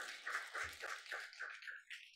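Brief applause from a few people: a quick run of claps, about four or five a second, that thins out and stops near the end.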